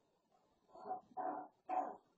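A dog barking three times in quick succession, starting about two-thirds of a second in.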